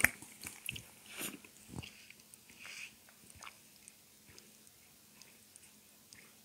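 Quiet sounds of a person drinking water close to the microphone: a sharp click at the start, then soft mouth clicks and swallows with a couple of short breaths over the first three seconds, fading to faint ticks.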